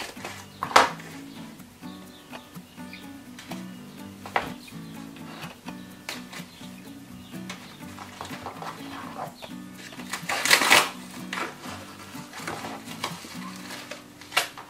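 Soft background music with a steady low melody, over the rustling and crinkling of a yellow padded paper envelope being snipped open with scissors and handled. A sharp snip about a second in, and a loud burst of rustling a little past the middle.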